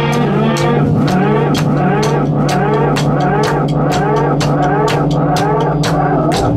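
Rock band playing: a drum kit keeps a steady beat of evenly spaced hits while an electric guitar plays repeating swooping pitch glides over a held low drone.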